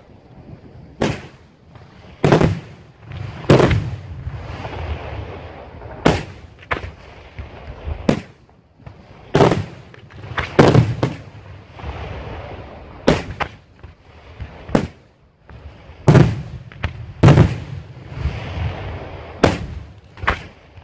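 Daytime aerial firework shells bursting overhead in over a dozen sharp, loud bangs at uneven spacing, each trailing off in an echo. They are smoke-and-report shells, seen only as white puffs in the daylight sky.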